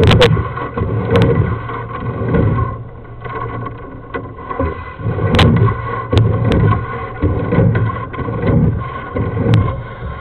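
A sewer inspection camera's push cable being fed down a drain line: irregular low rumbling that comes and goes every second or so, with scattered sharp clicks, the loudest about five seconds in.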